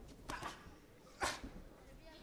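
Sounds of a boxing bout: two short, sharp bursts about a second apart, the second the louder, over low background voices.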